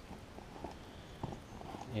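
Faint taps and light rustling from flat flexible ribbon cables being handled and shifted on a worktable, with one sharper tick a little past halfway.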